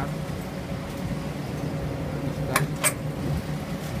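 Steady low mechanical hum, with two sharp clicks about two and a half seconds in.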